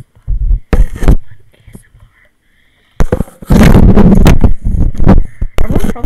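Clear plastic hamster exercise ball handled and rubbed against a pair of headphones used as a microphone, heard as loud, distorted rumbling and scraping. A short bout comes near the start and a longer, louder one from about halfway.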